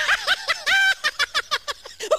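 High-pitched human giggling in rapid ha-ha bursts, with one longer held note just under a second in.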